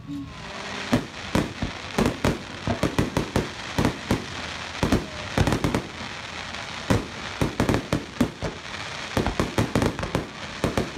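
Aerial fireworks bursting overhead: a dense, uneven run of sharp bangs, several a second, with crackling between them.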